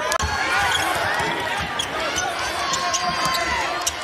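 Basketball dribbled on a hardwood court, a string of low thumps under the steady noise of an arena crowd.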